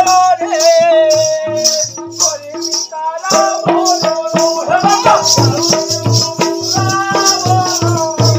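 Live Odia folk music for Danda nacha: a voice singing a melody over regular strokes on a barrel drum, with a steady rhythmic jingling on every beat. The singing drops out for a moment about three seconds in while the drum and jingles carry on.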